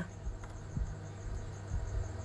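Quiet room tone: a steady low hum and a faint steady high-pitched tone, with a small click about half a second in and a soft knock near the three-quarter-second mark.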